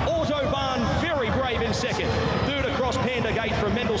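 Continuous speech: a horse-racing commentator calling the field home across the finish line.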